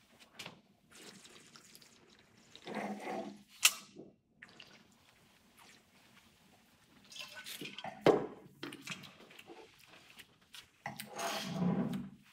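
Wine tasters slurping red wine, drawing air through a mouthful and swishing it around the mouth: two hissy slurps a few seconds apart, each with a sharp wet click.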